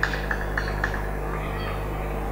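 Steady mains hum from a public-address system during a silent pause, with a brief run of short ticks in the first second.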